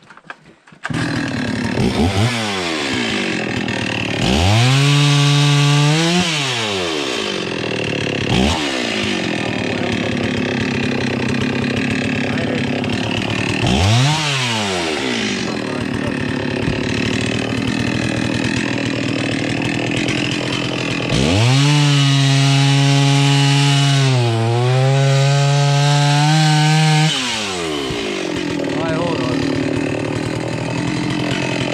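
Two-stroke chainsaw starting abruptly about a second in and running on, revved up several times. The longest rev, near the end, lasts about six seconds and its pitch dips briefly part-way through.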